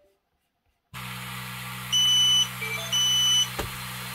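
Creality Falcon2 laser engraver powering up. After a second of silence a steady fan hum comes on, then the machine's buzzer gives two short, high-pitched beeps about a second apart, and a click follows near the end.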